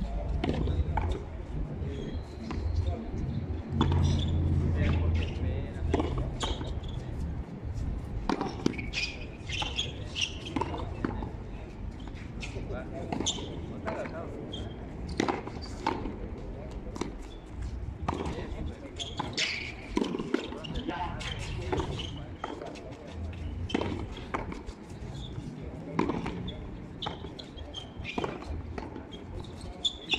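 A rally of frontón a mano: the ball struck by bare or gloved hands and smacking off the front wall and the concrete floor in sharp knocks at irregular intervals, with players' voices around them.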